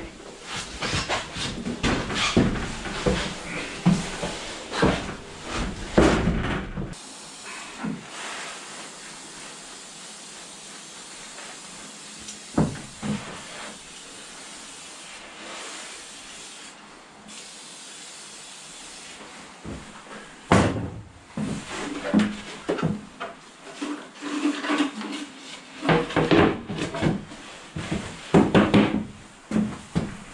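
Knocks, thuds and scrapes of a heavy wooden loudspeaker cabinet being handled, its lid opened and shut. The handling comes in two bouts, with a quieter stretch of steady hiss between them.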